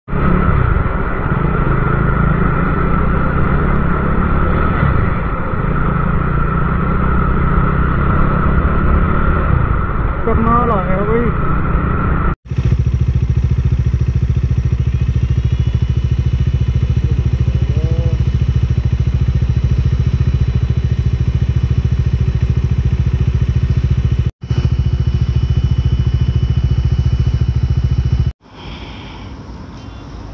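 Bajaj Dominar 400 motorcycle's single-cylinder engine running steadily on the move, a loud low drone. It breaks off abruptly three times at edits.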